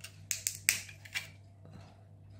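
A few sharp clicks of small 3D-printed plastic parts being worked with the fingers, as a little printed ball is snapped free from its printed piece; the loudest click comes a little before the middle.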